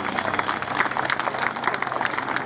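Audience applauding, dense and steady clapping right after a choral piece has ended.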